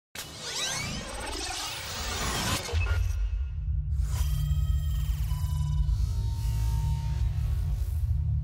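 Logo-intro sound design: a whooshing, glittering swish for the first few seconds. Then a deep steady bass drone sets in, with a second swell of high shimmer about four seconds in.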